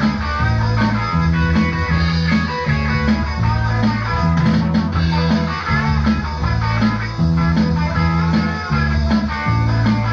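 Live rock band playing, led by electric guitar over a bass line that walks through repeated notes at a steady beat, in a small, echoing room.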